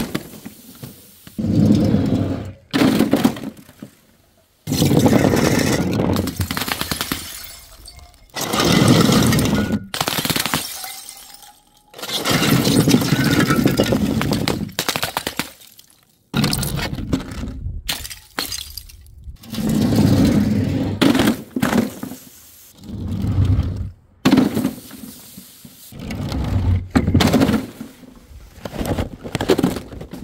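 A run of bottles and jars dropped from a height smashing on a board and paving: about a dozen separate crashes, each a sudden impact followed by shattering and clattering glass that trails off over a second or two.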